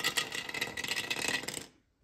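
A small die dropped into a dice tower, clattering down inside it in a fast run of clicks and rattles that dies away after about a second and a half.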